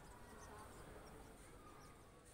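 Near silence: faint outdoor room tone with a low rumble and a faint steady hum.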